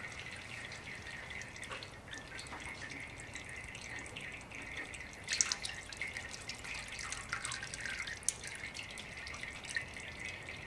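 Engine oil dripping and trickling off a car's sump and oil filter housing during an oil drain, a steady trickle with scattered drips and a louder splash a little past five seconds in.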